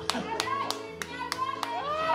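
Live keyboard music in an instrumental passage between verses: held chords with a sharp clap on every beat, about three a second. A voice begins to come in near the end.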